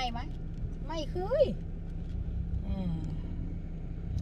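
Steady low rumble of a car heard from inside the cabin, with a few short words of women's speech over it.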